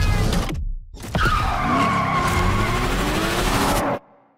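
Car tyres skidding with a long squeal that wavers in pitch, starting about a second in and cutting off suddenly near the end.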